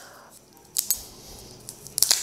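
Plastic spool of solder wire being handled and turned in the hands: a few light clicks and rattles, two about a second in and a louder cluster near the end as the wire is pulled.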